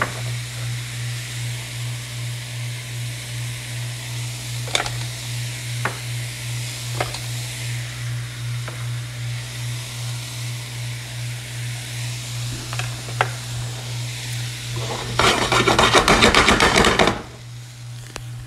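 Mixed vegetables sizzling in a pan with a steady hiss over a low pulsing hum, with a few light clicks. Near the end there is a loud burst of rapid rattling and scraping for about two seconds, then the sound drops off suddenly.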